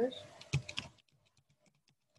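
Computer keyboard typing: a quick cluster of keystroke clicks about half a second in, then fainter, sparser taps.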